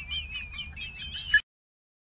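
High, rapidly warbling chirps, like a small bird singing, that cut off suddenly a little past halfway.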